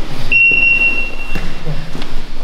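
A single high-pitched electronic beep, one steady tone held for about a second, from a gym round timer. It sounds over the rustle of grappling on the mat.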